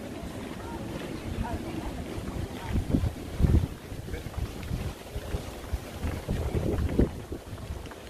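Wind buffeting the camera microphone outdoors: an uneven low rumble that swells in gusts, strongest about three and a half seconds in and again near seven seconds.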